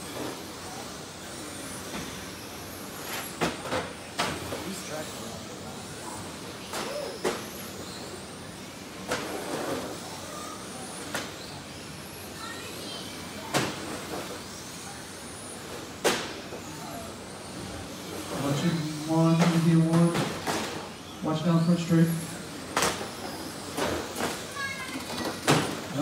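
Electric radio-controlled touring cars racing on a carpet track: a steady hiss of motors and tyres, broken every second or two by sharp clacks of cars striking the track border and each other. Voices come in near the end.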